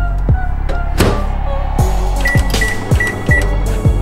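Background music with a steady drum beat. Under it, a Samsung microwave oven door shuts with a thunk about a second in, then four short high keypad beeps sound as the microwave is set.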